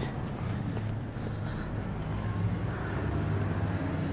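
Steady low hum of a running vehicle engine, with general street noise around it.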